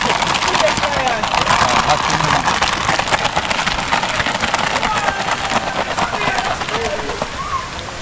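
Steady rush of river water, with faint distant voices talking throughout.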